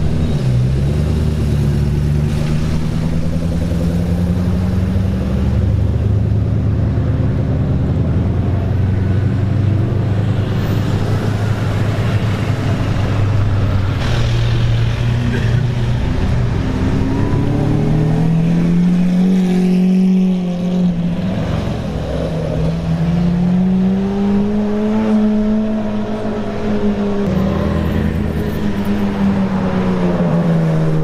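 Supercar engines running at low speed as cars pull through the street one after another, with a steady deep drone at first, then engine pitch rising and falling in slow swells as they rev and move off.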